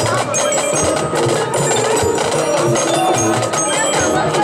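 High school marching band playing, with the front ensemble's mallet percussion (bells and marimba) standing out: ringing struck notes over held band tones.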